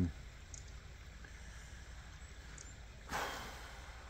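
A short, sharp breath, a quick rush of air about three seconds in, over a steady low background rumble.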